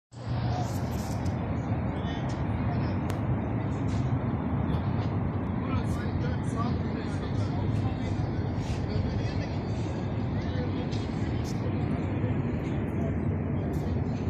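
Outdoor city-square ambience: a steady wash of road traffic with the voices of people nearby.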